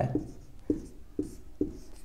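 Marker pen writing on a whiteboard: a few short strokes with faint scratching.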